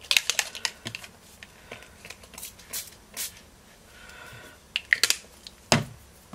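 Fine-mist pump bottle of Distress Oxide Spray spritzed onto card in a series of short bursts, with a heavier knock near the end.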